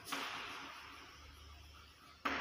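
Chalk writing on a chalkboard: one stroke that starts sharply just after the start and fades away over about a second and a half.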